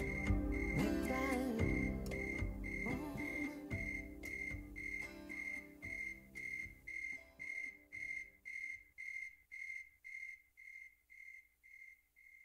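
Electronic metronome beeping at 115 beats per minute, a high short beep about twice a second, while guitar music fades away over the first eight seconds or so; then the beeps go on alone and themselves fade out near the end.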